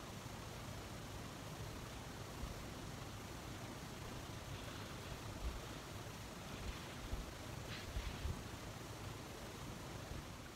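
Quiet room tone: a steady faint hiss with a few soft low bumps and one faint click.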